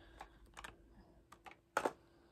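Light clicks and taps of small eyeshadow palette boxes being set down onto a stack, a few scattered ones with a sharper knock near the end.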